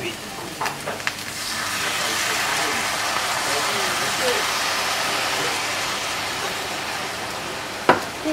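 Sukiyaki pan sizzling as the soy-sauce-based sauce goes into the hot pan. The sizzle swells about a second and a half in, holds steady and eases a little toward the end. There is a sharp click just before it ends.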